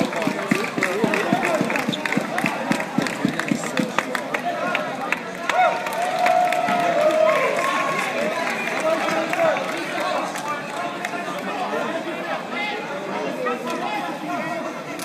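Crowd chatter: many overlapping voices of spectators and coaches talking and calling out around a grappling match in a large hall.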